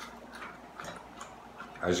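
Faint short clicks, about two to three a second, at low level; a man's voice starts near the end.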